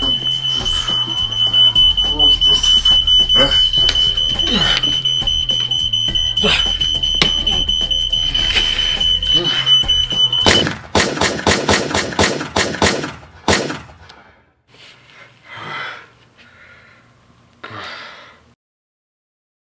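A smoke alarm sounds a steady high tone, set off by smoke from the microwave, and cuts off suddenly about ten seconds in. Right after, there is a quick series of about ten sharp handgun shots over three seconds.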